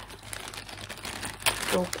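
Small clear plastic zip bags crinkling and rustling irregularly as they are handled and rummaged through.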